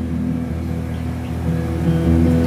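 Live band music in a short instrumental gap between vocal lines: strummed acoustic guitar over a low, held bass note, with no singing.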